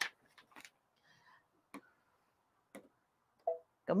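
A quiet room with a few faint, isolated clicks, two of them about a second apart, as the embroidery machine's touchscreen is handled.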